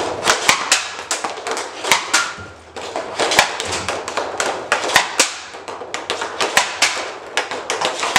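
Hockey sticks shooting pucks off a plastic shooting pad, with pucks hitting the goal: a rapid, irregular series of sharp cracks and clacks, several a second.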